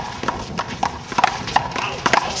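One-wall handball rally: the rubber ball slapping off hands, the concrete wall and the ground in several sharp, irregularly spaced knocks, with sneakers scuffing on the court.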